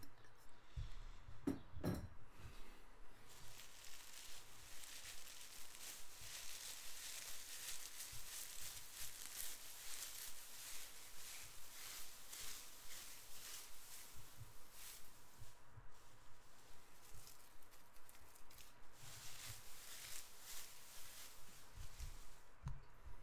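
Shredded gift filler rustling and crinkling as handfuls are pulled out and handled, with a couple of knocks about two seconds in.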